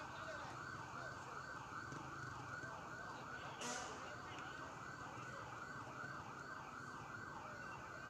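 A police car siren on a fast warble, its pitch rising and falling about three times a second. There is a brief hiss about halfway through.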